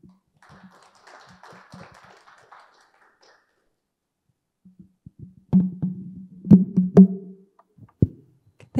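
Light audience applause lasting about three seconds. A couple of seconds after it dies away comes a run of knocks and thumps over a low hum, two of them loud near the end.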